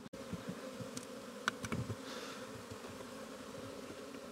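Honeybees buzzing steadily in the air around open hives, bees just shaken out of a queenless nucleus. A couple of faint clicks come about a second and a half in.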